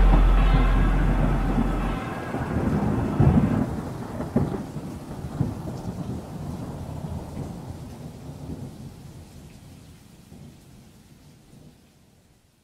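The music's last chord dies away into a rumble of thunder with rain, with a couple of louder cracks a few seconds in. It all fades slowly out to near silence.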